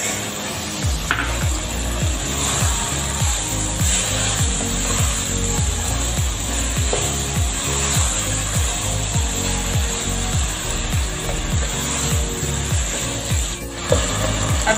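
Wooden spatula scraping and tossing shredded vegetables around a non-stick wok during stir-frying, a steady rasping scrape, over a background music beat of about two thuds a second.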